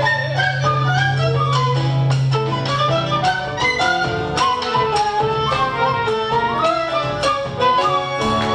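A live popular-music band playing: a melody line over acoustic guitar, bandoneon, piano, double bass and percussion, with a low held note for the first few seconds.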